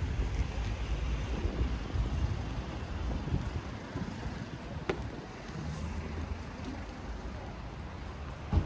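Wind buffeting the microphone: an uneven, gusty low rumble, with a single sharp click about five seconds in.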